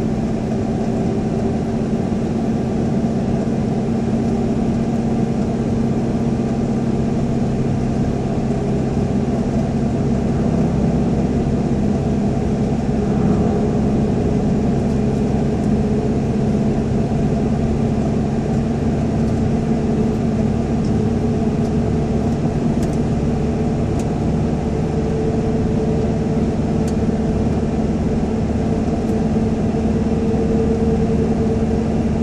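A car driving at a steady speed through a road tunnel: engine and tyre noise as a continuous, even drone with a low hum.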